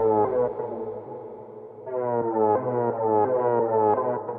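Techno track in a breakdown with no deep bass: a repeating synthesizer riff of upward-sliding notes that thins out and drops quieter about a second in, then comes back louder just before the two-second mark.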